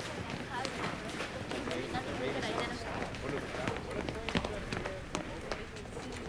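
Indistinct murmur of several background voices with footsteps and scattered light clicks and knocks.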